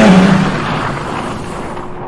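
Car sound effect: a car engine note with a rushing noise, fading away steadily.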